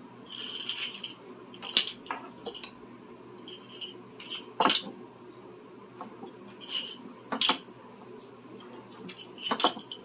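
Metal clinks and sharp knocks, about four loud ones a couple of seconds apart, with short rustling scrapes between, as a gas hose and its metal fittings are handled at a propane tank that feeds a gas forge.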